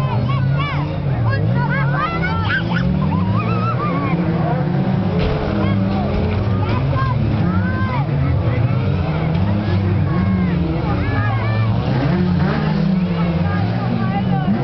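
Several stock car engines revving hard, their pitch rising and falling as the cars race on a dirt track. A few knocks from a collision come about five to seven seconds in, as a caravan is smashed.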